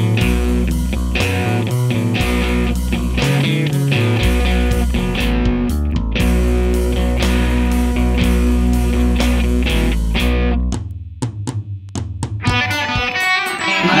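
Instrumental stretch of a rock song, with guitar over bass and drums and no singing. About eleven seconds in the band drops out for a moment, leaving a few sparse hits, then comes back in.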